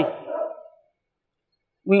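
A man's speech trailing off in the first half-second, then about a second of dead silence, then his speech resuming near the end.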